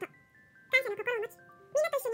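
A voice reading aloud over a gentle music-box (orgel) background melody: bell-like notes ring on and fade between the spoken phrases.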